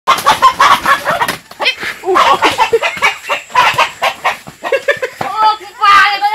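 Chickens clucking, a continuous run of loud, short, rapid calls.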